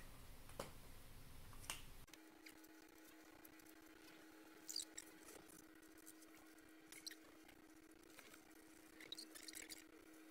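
Faint, scattered scratches and squeaks of drawing tools on paper, under a thin steady hum that starts about two seconds in.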